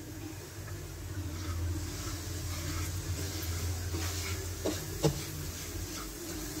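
Semolina frying in ghee in a pan over a low flame, a steady soft sizzle as it is stirred, with a spoon knocking against the pan twice near the end. A low steady hum runs underneath.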